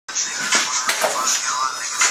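Indistinct voices in a small room, with a few sharp knocks about half a second and about a second in.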